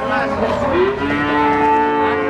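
Cattle mooing: one long, loud call that rises in pitch at first, then holds steady.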